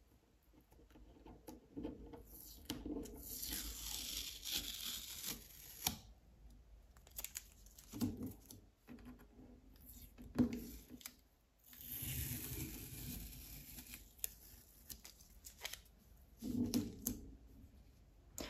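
Adhesive tape being peeled off the edges of a sheet of painting paper, with two long peels about three seconds in and again about twelve seconds in, and short crinkles and rustles of tape and paper between them.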